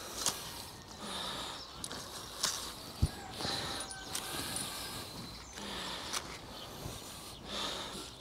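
Purple sprouting broccoli being picked by hand: leaves rustling and a few short, sharp snaps of spears breaking off, the loudest about three seconds in.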